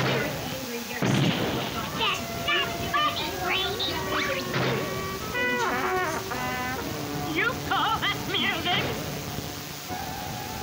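Cartoon soundtrack: a crash about a second in, then cartoon music with sliding, falling notes.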